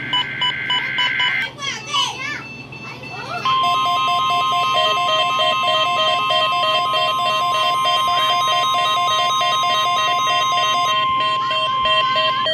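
NOAA Weather Radio Required Weekly Test heard through a Midland weather alert radio's speaker. The first second and a half ends the digital SAME header bursts, with short beeps. After a brief warbly stretch, the steady 1050 Hz warning alarm tone starts about three and a half seconds in and holds, with the receiver's own rapid alert beeps pulsing over it.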